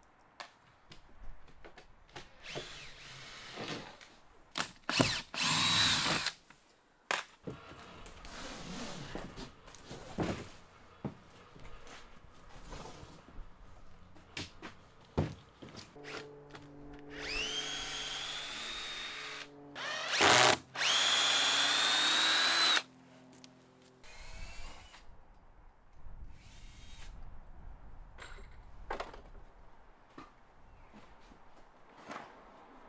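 Cordless drill backing deck screws out of timber in a series of short runs, its motor whining up in pitch each time it spins up. The longest and loudest runs come about two-thirds of the way through. Short knocks of wood fall between the runs.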